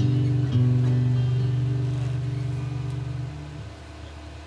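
A guitar chord is strummed again about half a second in and left to ring out, fading away over about three seconds as the song's final chord.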